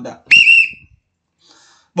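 A man's single short, loud, high-pitched whistle, sliding up briefly at the start and then held for about half a second before it dies away.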